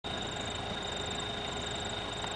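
4WD engines idling steadily, with a steady high-pitched tone running alongside.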